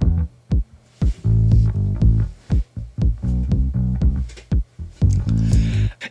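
An electric bass line and Roland TR-909 drum machine hits playing together, without sidechain compression, so the bass and the 909 muddy together in the low end. The held bass notes are broken by short sharp drum strikes throughout.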